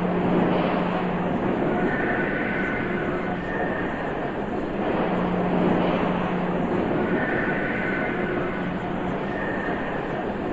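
Drone piece made from processed factory field recordings from a car assembly plant: a dense, steady wash of mechanical noise. A low hum returns about every five seconds in a loop, with higher whining tones in between.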